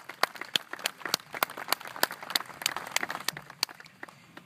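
Light applause from a small crowd, the separate hand claps plainly distinct and irregular, thinning out near the end.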